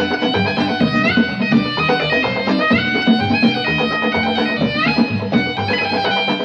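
Instrumental passage of Arabic orchestral music: violins, keyboard and electric guitar play the melody over a hand-drum rhythm, with the melody sliding up in pitch several times.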